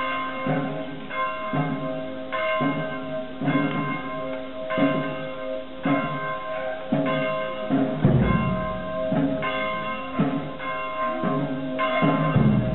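Church bells ringing, about one stroke a second, each leaving a ringing hum that carries into the next. There is a heavier low thud about eight seconds in.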